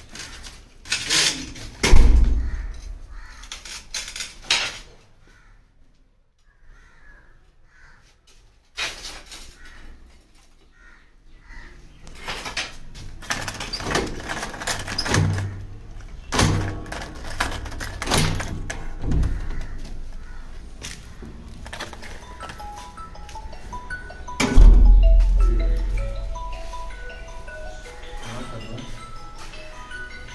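Steel door shut with a heavy thud about two seconds in, then a run of clicks and clunks from its lever handle and lock being worked, and another heavy thud near the end. Background music with light chiming notes comes in over the last few seconds.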